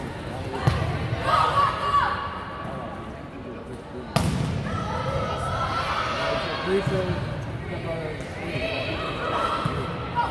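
Players and spectators shouting in a reverberant gym during a volleyball rally, with the thud of ball hits and bounces; the sharpest hit comes about four seconds in.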